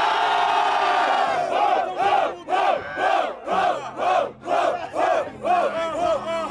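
Rap battle crowd reacting to a punchline: one long collective shout, then chanting together in a steady rhythm of about two to three shouts a second.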